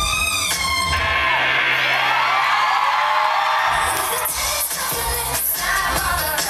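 Live pop concert music over the arena sound system. About a second in, the drum beat and bass drop out, leaving a held low synth note under high cheering from the crowd. The full beat comes back after about four seconds.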